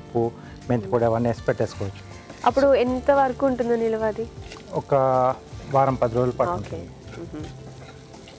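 Talking over food frying in a pan: a faint sizzle, with a wooden spatula stirring and scraping the pan between the words.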